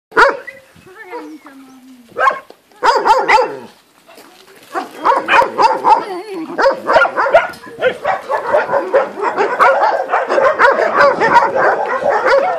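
Dogs barking: a few separate barks and a falling whine at first, then from about five seconds in a continuous chorus of many puppies and dogs yipping and barking over one another.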